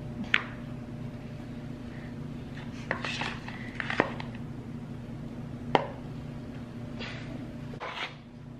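Disposable aluminium foil pan clicking and crinkling a few times as it is handled while whipped topping is spread over it by hand, with a steady low hum underneath.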